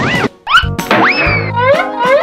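Background children's music with cartoon sound effects: a quick run of springy boing and slide-whistle glides, rising and falling in pitch.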